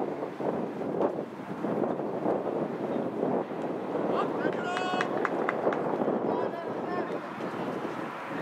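Outdoor football-match ambience: indistinct voices of players calling across the pitch, with a sharp high-pitched shout just before halfway, and wind on the microphone.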